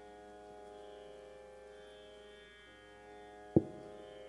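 Harmonium holding a steady chord as a drone for raag Gujri, with one sharp, loud drum stroke near the end.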